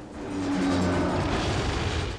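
Film soundtrack excerpt: sustained music tones under a rushing, rumbling wash of sound effects that swells in over the first half second and then holds.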